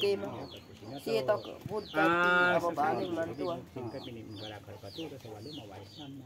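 Domestic chickens calling: a steady run of short, high, falling peeps, about two or three a second, with a loud drawn-out call about two seconds in.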